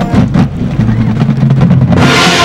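Marching band playing: low brass holding notes under a run of quick drum strokes.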